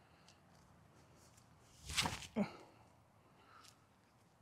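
A short whoosh about halfway through as a disc golf forehand throw is made, with a smaller sound just after it; otherwise faint outdoor background.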